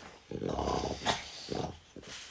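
French bulldog grunting and snuffling close up: one longer bout, then two short ones.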